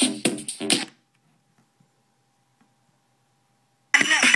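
SimplyVibe SG-S350P portable speaker playing electronic music with a strong beat, which cuts off abruptly about a second in. Near silence follows, with a faint steady hum and a few tiny clicks, then a different track starts suddenly near the end.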